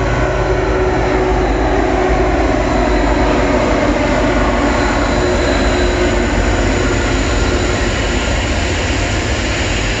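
Kansas City Southern diesel freight locomotive passing overhead, loud and steady, followed by double-stack container cars rolling over the rails.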